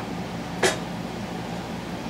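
A single sharp click as a small metal brake part is set down on the workbench, over a steady low background hum.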